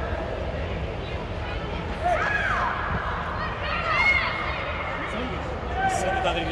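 Shouted calls from youth soccer players and spectators during play under an air-supported sports dome, with a high call about two seconds in and another about four seconds in, over a steady low hum.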